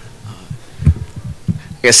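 A few soft, dull low thumps, irregularly spaced, picked up by a microphone, then a man says "Yeah" at the very end.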